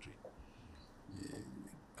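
A pause in a man's speech: low room noise with a soft, breathy sound about a second in, like a breath taken before he goes on.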